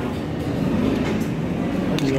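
A steady low rumble with faint, indistinct voices in the background.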